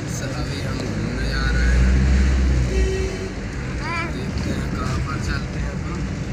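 Car cabin noise while driving: a steady low rumble of engine and road, with short snatches of voices about four and five seconds in.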